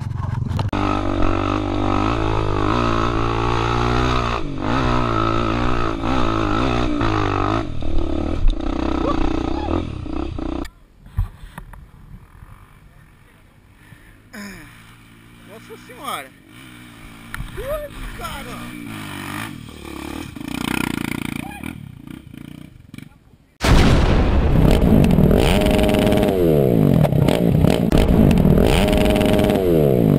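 Off-road dirt bike engine running under throttle, heard close from the camera rider's own bike. About ten seconds in it drops away suddenly to a much quieter stretch. About 24 seconds in, loud engine revving returns, rising and falling in pitch.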